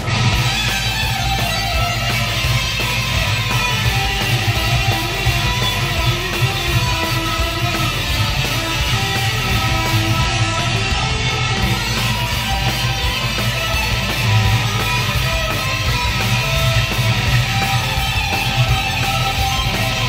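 Telecaster-style electric guitar played fast, shred-style, with the fingertips instead of a pick, over a backing track with bass and drums.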